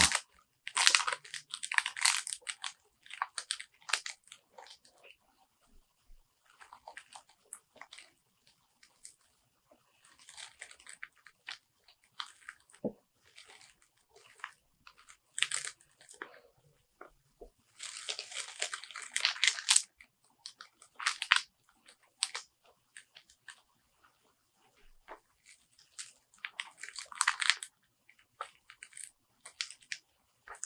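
Glossy pages of a new hardcover comic omnibus crackling as they are turned and flexed apart, in scattered bursts with quiet gaps between, the longest about two-thirds of the way through. The crackle is the sound of pages stuck together being pulled apart, an edition known for it.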